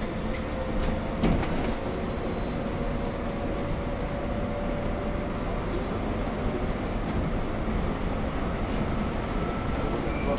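Cabin noise of an electric city bus under way: a steady low rumble with a faint, thin steady whine and a few light rattles in the first couple of seconds.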